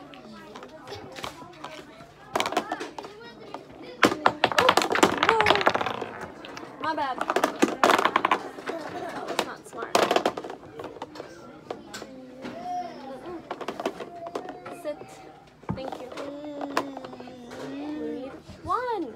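Small plastic counting cubes clicking and clattering against each other and a plastic bin, loudest in a burst of rattling a few seconds in, over a child's wordless vocalizing.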